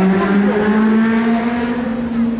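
A steady motor hum with a clear pitch, stepping up slightly about half a second in and then holding.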